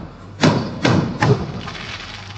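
Aerial firework shells bursting overhead: three sharp bangs within about a second, each trailing off in a short echo.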